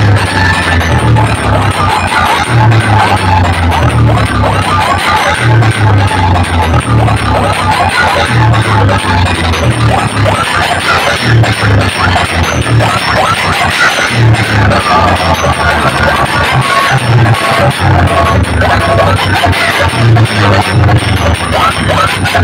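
Loud DJ music from a huge sound-box speaker stack, with a heavy, repeating bass beat under a dense, noisy wash of sound.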